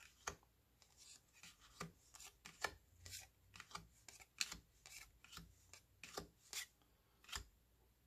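Faint, irregular ticks and light rubs of baseball trading cards being slid one by one off a hand-held stack, a few cards a second.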